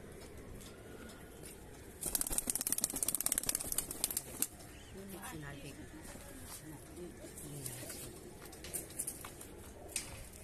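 Teddy pigeons cooing, low rolling coos through the second half, with a rapid flurry of wingbeats from about two to four and a half seconds in.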